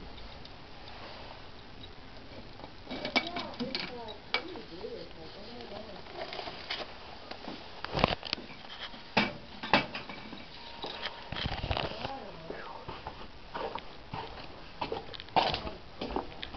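Scattered clicks and knocks from handling mail at brass post office boxes, the sharpest a few taps about eight to ten seconds in.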